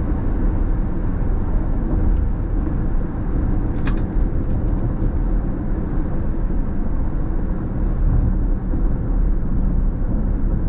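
Steady road noise heard from inside a car cruising on a freeway: engine and tyres on wet pavement. A few brief high clicks come about four seconds in.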